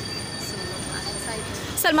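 A steady high-pitched squeal over a background of street noise, cutting off about a second and a half in.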